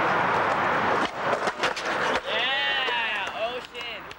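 Skateboard noise: a steady scraping hiss for about the first second, then a few sharp clacks of the board. After that a person gives a long yell that rises and falls in pitch.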